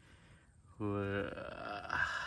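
A man's wordless vocal sound, starting about 0.8 s in: a steady low-pitched tone for about half a second, then a higher, thinner continuation that trails off.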